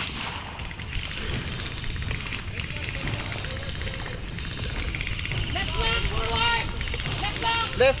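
A steady rumble of outdoor noise on a body-worn camera, with a few faint distant pops of blank fire. From about six seconds in come distant shouting voices.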